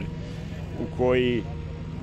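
Diesel engine of road-building machinery idling steadily with a low hum, with a short drawn-out vocal sound from a man about a second in.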